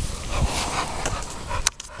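A pit bull panting close up, out of breath from chasing balls, with a sharp click near the end.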